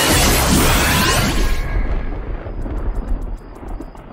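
Cartoon magic-blast sound effect as a car is engulfed in glowing energy: a loud rushing burst that fades away after about two seconds, with music underneath.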